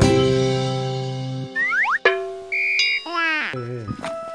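Channel intro jingle: a held music chord that fades over about a second and a half, followed by cartoon sound effects: quick falling whistle-like glides, a short high beep, and a descending boing near the end.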